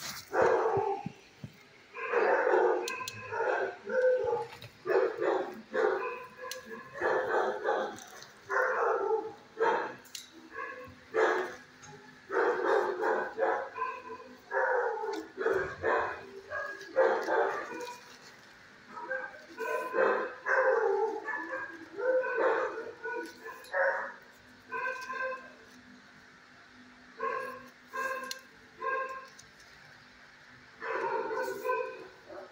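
Dogs barking in an animal shelter's kennels: short barks come again and again in irregular runs, with a lull about four-fifths of the way through.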